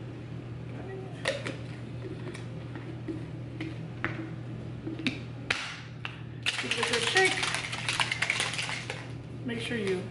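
Teal plastic BlenderBottle shaker holding a pre-workout drink: a few clicks as the bottle and lid are handled, then a dense, loud rattle for about two and a half seconds from about six and a half seconds in as it is shaken to mix the powder.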